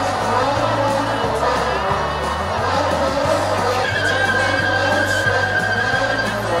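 Background pop music with a steady bass line, and a long held high note in the second half.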